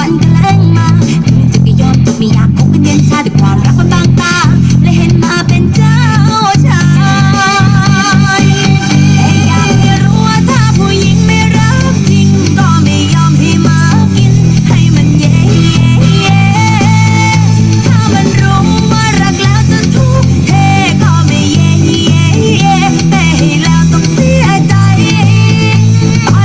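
Electric bass guitar playing a steady bass line along with a recorded song, the bass notes loud and low under the song's melody.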